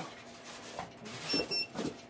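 Plastic packaging bag crinkling and rustling against the foam packing box as a foam RC plane fuselage is handled and lifted out, in a few short bursts. Two short high-pitched electronic beeps sound in the background about one and a half seconds in.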